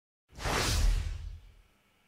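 A whoosh sound effect with a deep low rumble under it, used as the intro logo's transition. It starts about a third of a second in and fades away within about a second.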